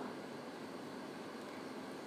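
Faint, steady background hiss with no distinct events.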